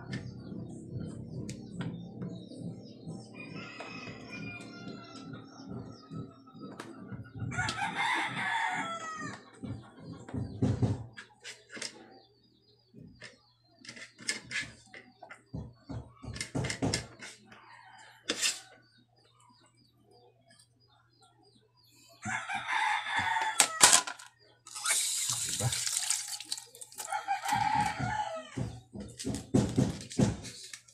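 Roosters crowing about four times, each call around two seconds long, with a fainter call early on. Light clicks and knocks of kitchen work at a cutting board fall between the calls.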